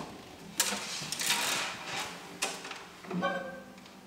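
Handling noise of an acoustic guitar being picked up and settled on a player's lap: a couple of sharp knocks and some rustling, then a brief ring from the strings near the end.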